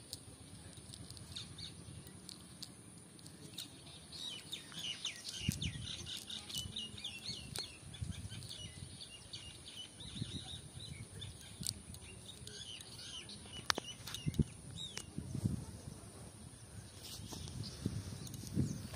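Small birds chirping in quick runs of high notes, busiest in the first half. Under them, the low rustle of a cast net being handled on grass, with a few sharp knocks.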